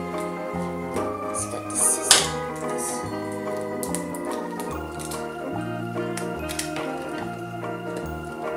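Background music: an organ-like keyboard tune over a bass line that steps to a new note about twice a second, with a sharp click about two seconds in.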